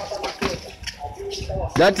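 A man's voice calling out, dropping to quieter background voices in the middle and rising again near the end.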